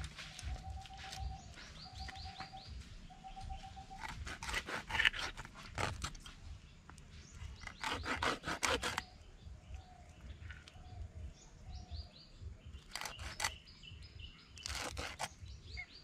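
Bigeye scad being scraped and cut by hand against a large fixed knife blade: several short clusters of rasping scrapes. Birds call throughout, with a short whistled note repeated about five times in the first few seconds and high chirps now and then.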